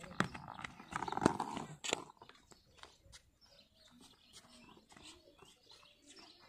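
Quick running footsteps in sandals on a paved road, with the knock and rattle of a stick driving a rolling old tyre. The knocks come thick and loudest in the first two seconds, then thin to fainter scattered taps.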